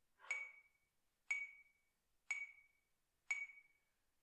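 Metronome clicking four times, one click a second, each a short high ping with a brief ring: a count-in before the next trumpet exercise.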